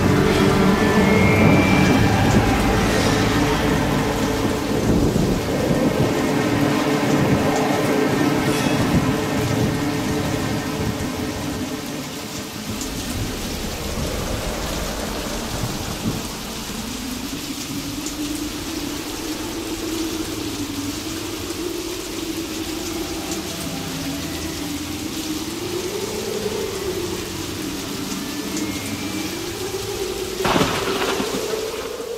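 Recorded thunder and rain sound effects over background music, with low rumbling strongest in the first half. From about halfway a single slow melody line rises and falls over the rain.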